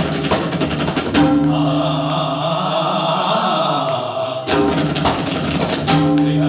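A tabla ensemble playing with male voices chanting a vocal nagma over held harmonium notes. Sharp clusters of drum strokes come near the start, again about a second in, and in a dense run from about four and a half seconds in.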